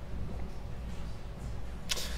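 A pause in a man's speech: a steady low hum under faint room tone, with a quick breath near the end.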